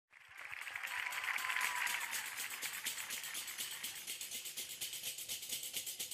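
Several Galician pandeiretas (frame drums with metal jingles) played together in a fast, even rhythm of crisp strokes and jingle rattles. They fade in over the first second.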